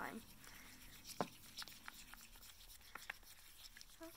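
Wooden stirring stick working shaving cream into slime in a small plastic cup: faint scrapes and a few light clicks of the stick against the cup, one sharper click about a second in.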